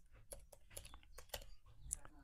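Faint, irregular keystrokes on a computer keyboard as text is typed, a string of light clicks.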